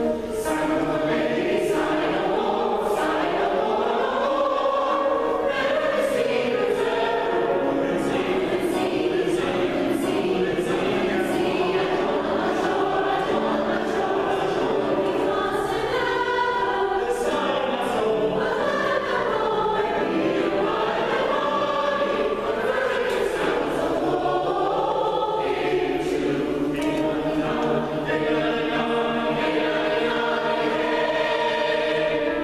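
Mixed choir of women's and men's voices singing a choral piece together, with piano accompaniment.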